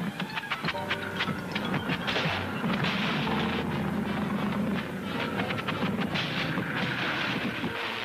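1940s cartoon soundtrack: orchestral score mixed with sound effects, a dense run of sharp clicks and rattles over a noisy rushing sound, thickest about a second in and again near the end.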